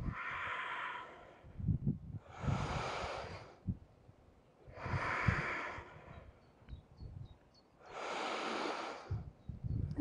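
A woman breathing audibly into a close microphone: four long, even breaths about two and a half seconds apart, alternating inhale and exhale as she paces her breath with slow yoga movements. A few soft low thumps come between the breaths.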